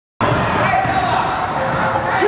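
A basketball dribbled on a hardwood gym court, with the voices of players and spectators echoing through the gym hall. The sound cuts in suddenly just after the start.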